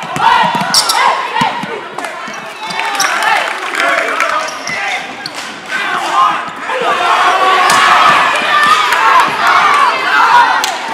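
Basketball bouncing on a gym floor under a noisy crowd of spectators shouting and cheering. The crowd grows louder about seven seconds in.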